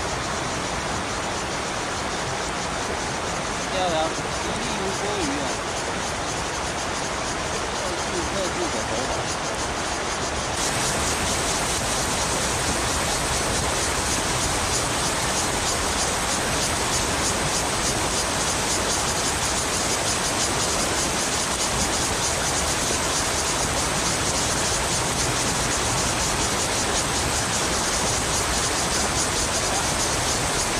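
Shallow river rushing over a stony riffle: a steady rush of water that grows louder and brighter about ten seconds in.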